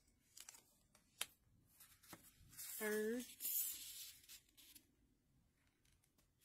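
Tarot card being handled and slid off the top of a deck: a few light clicks, then a hissing scrape about two and a half seconds in that lasts about two seconds. A short hum from a voice comes about three seconds in.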